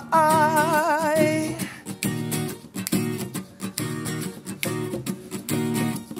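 A male voice sings a held, wavering note right at the ear of a binaural dummy head and stops after about a second and a half. Acoustic guitar chords carry on alone for the rest.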